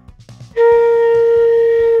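Concert flute playing one long, steady, sustained note that starts about half a second in.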